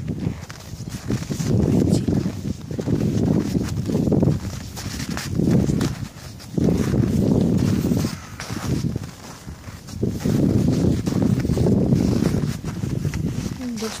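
Footsteps crunching in snow while picking a way down a trampled snowy slope, with a low rumbling noise on the microphone that swells and fades every second or two.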